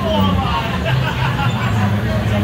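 An indoor ride car running along its elevated track with a steady low hum, under a babble of voices.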